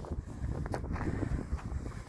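Wind rumbling on the microphone, with a couple of faint crunches of a shoe on loose gravel and rock a little before the middle.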